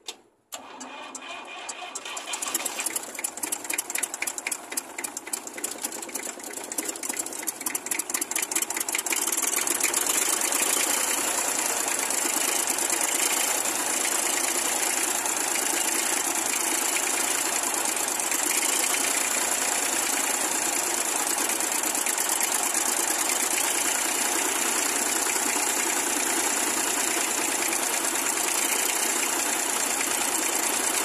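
Fordson Dexta's three-cylinder Perkins diesel catching after cranking, firing raggedly and unevenly for several seconds, then settling into a steady idle about ten seconds in. The engine is being started and bled after running out of diesel, so air is being cleared from the fuel system.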